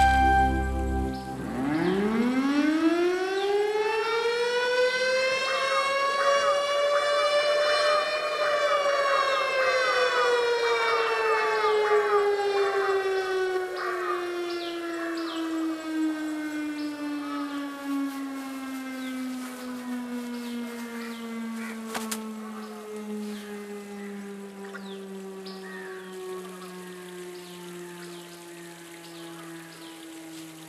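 A siren winding up, its pitch rising steeply for about seven seconds, then slowly winding down and fading away.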